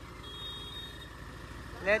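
Diesel tractor engines running slowly at low revs, a steady low rumble. A voice starts just before the end.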